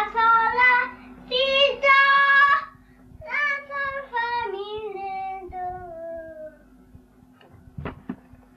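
A high singing voice in an interlude of a hip hop track, sung in short phrases that rise and fall over a steady low drone; the last phrase slides downward and fades out. A few short record-scratch strokes come in near the end.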